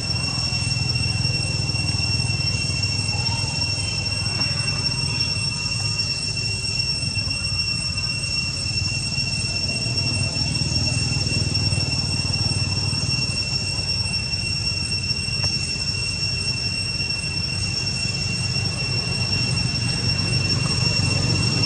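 A steady low rumble with a constant high-pitched whine over it, unchanged throughout.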